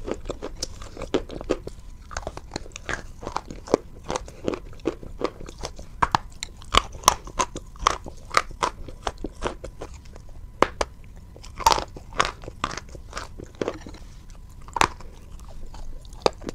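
Close-miked crunching and chewing of chalk: an irregular run of sharp, crisp cracks, several a second, as pieces are bitten and ground between the teeth.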